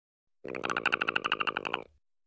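Perry the Platypus's chattering rattle: a fast, even, throaty rattle lasting about a second and a half.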